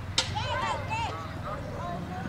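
High children's voices calling and shouting across a football pitch, with one sharp knock about a quarter-second in, like a ball being kicked.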